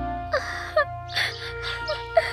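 An animated frog character crying, three short wailing sobs over soft background music.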